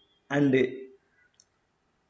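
A man's voice saying a short filler phrase, "and uh", followed by a single faint click in the pause.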